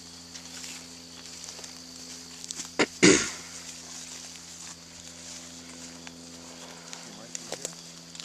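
Footsteps through dry leaf litter, with two sharp cracks close together about three seconds in, the loudest sounds, over a faint steady hum.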